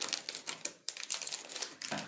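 Hands handling sugar-coated Gems chocolate candies, making a rapid, irregular run of small clicks and crackles.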